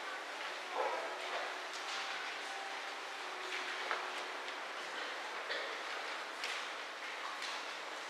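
Quiet room noise in a large hall, with faint footsteps, shuffling and paper rustling as someone walks to the lectern, and a brief louder sound about a second in.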